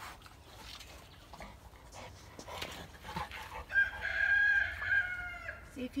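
A rooster crowing once, a single long call held steady about four seconds in, tailing off slightly at the end.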